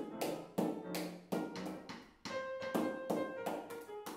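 Freely improvised piano and snare drum duet: an upright piano plays scattered held notes while a cloth-draped snare drum is struck in quick, irregular hits.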